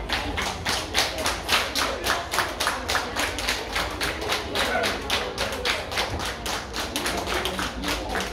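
A crowd clapping in unison, about five even claps a second, keeping a steady rhythm.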